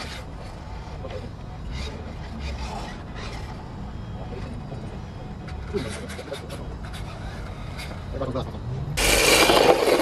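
Radio-controlled cars running on tarmac: a faint rasp of small tyres sliding over a steady low rumble. About nine seconds in it jumps to loud rushing road noise picked up by a camera mounted on one of the cars.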